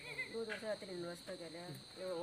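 Insects, crickets by the sound, chirring steadily in one high tone, heard under voices talking.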